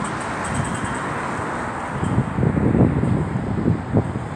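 Street ambience with car traffic noise, and wind buffeting the microphone in low gusts that grow stronger in the second half.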